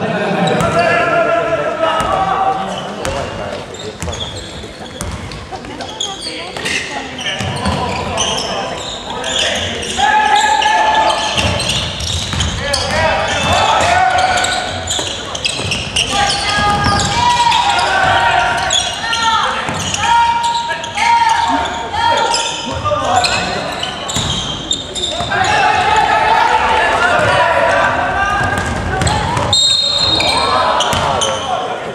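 Basketball game sounds: a ball bouncing on the hardwood court with short sharp knocks, under players and benches shouting and cheering.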